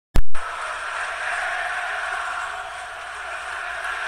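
Intro sound effect: a sharp hit at the very start, then a steady noisy rush.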